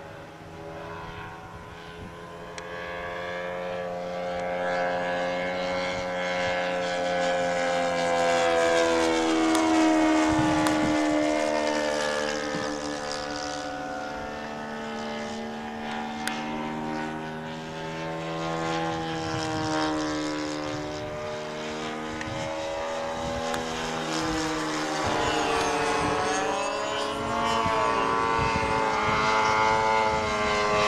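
Radio-controlled scale warbird model airplane flying overhead, its engine droning and wavering up and down in pitch as it passes and the throttle changes. It grows louder toward about ten seconds in, fades somewhat, then rises again near the end as the plane comes toward the microphone.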